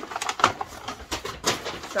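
Brown paper shopping bag rustling and crinkling as it is handled, a quick irregular run of crackles.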